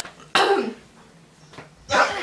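A person coughing once, a short loud burst about a third of a second in, with another vocal sound starting just before the end.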